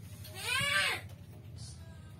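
One drawn-out vocal call, about two thirds of a second long, rising and then falling in pitch, over a low steady hum.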